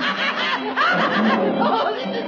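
A cartoon character's voice laughing in a run of short snickers.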